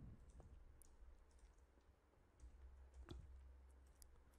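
Faint computer keyboard keystrokes: a few scattered clicks, the clearest about three seconds in, against near silence.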